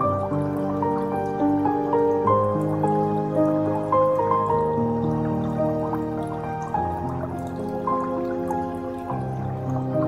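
Slow, calm instrumental music of overlapping held notes and soft chords, with faint water dripping sounds layered over it.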